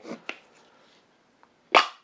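A spray-paint can being opened: a few faint handling clicks, then one short, sharp, loud pop near the end as the cap comes off.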